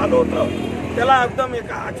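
A man speaking Marathi into a handheld microphone outdoors, in a steady flow of speech with short pauses.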